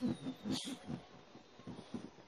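A child's short, quiet, breathy laugh.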